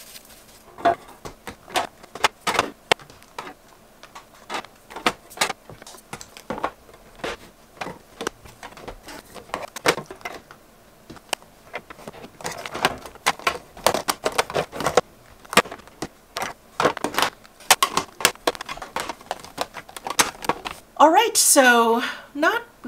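Makeup compacts and palettes clacking against one another and against a clear acrylic drawer as they are set back in, a long run of irregular sharp clicks and knocks, some in quick clusters.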